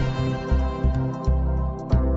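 Instrumental intro music with a steady, repeating bass beat under sustained melody notes.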